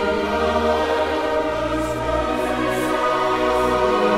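Choir singing slow, sustained chords over low held bass notes, a sacred oratorio setting of Italian words of praise, with soft sibilant consonants of the text audible here and there.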